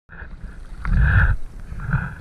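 A diver's heavy breath close to the microphone, rushing loudly for about half a second about a second in.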